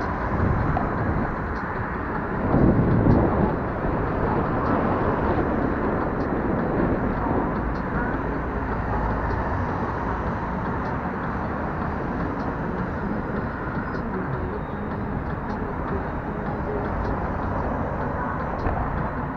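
Electric scooter riding along city pavement: a steady rumble of small tyres rolling over asphalt and paving, heard from low on the scooter, swelling louder for a moment about three seconds in.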